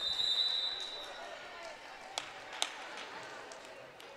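An official's whistle sounds one steady, high note for about a second. A volleyball then bounces twice on a hardwood gym floor, two sharp smacks about half a second apart.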